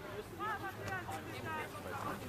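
Distant voices calling out across an open pitch: several short shouts, none close enough to make out words.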